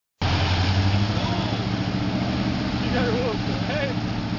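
A 1999 Dodge Ram pickup's engine runs steadily under load as the truck churns through mud and standing water, with water splashing at the wheels. People's voices come in faintly near the end.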